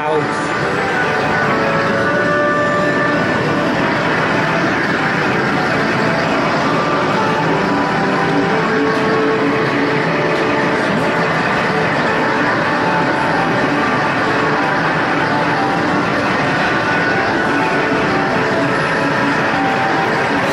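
Steady arcade din: overlapping electronic beeps and jingles from game machines over a constant wash of noise, with voices in the background.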